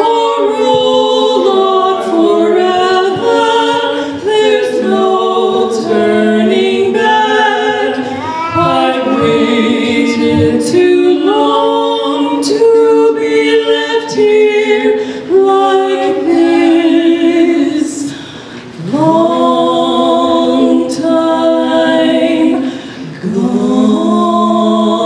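Two women singing a duet unaccompanied into handheld microphones, their voices in long held notes, with brief breaks a little past halfway and again near the end.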